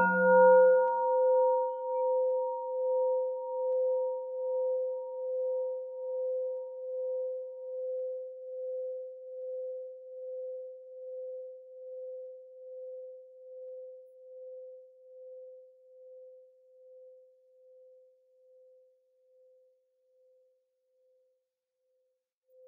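A Buddhist bowl bell struck once with a wooden striker: a short knock, then one steady ringing tone that pulses gently as it dies away slowly over about twenty seconds, with its higher overtones fading first.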